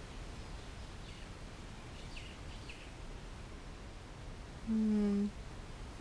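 Faint steady outdoor background noise with a few soft bird chirps, then, about five seconds in, a woman's short steady hum lasting about half a second.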